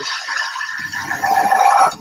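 A dense, noisy trailer sound-design swell that builds louder over about two seconds and then cuts off abruptly just before the cut to a title card.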